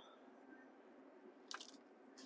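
Near silence: faint room tone, with a few faint clicks about one and a half seconds in.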